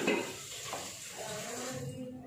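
Raw fish pieces being laid into a clay cooking pot of coconut masala, with a soft knock at the start and small taps, over a steady hiss that cuts off suddenly near the end.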